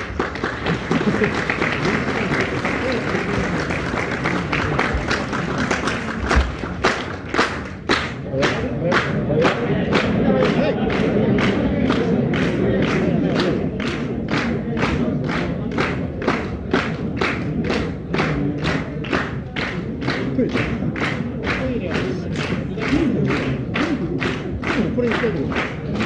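Concert audience calling for an encore: many voices chanting together, joined after several seconds by steady rhythmic clapping at about two claps a second.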